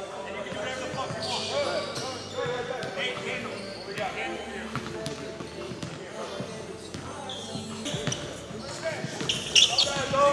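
Basketballs bouncing on a hardwood gym floor, with sharp irregular strikes under indistinct voices. A high sneaker squeak comes near the end.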